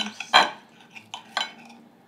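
Knife and fork scraping and clinking on a plate as a steak is cut, in a few short strokes, the loudest about a third of a second in.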